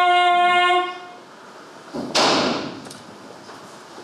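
A woman's sung note, held and then breaking off about a second in. About two seconds in comes one sudden, loud, rushing burst of noise that dies away within about a second.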